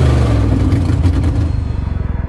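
Car engine running at high revs, the pitch easing off just after the start, then dropping about one and a half seconds in to a deep, fast-pulsing rumble.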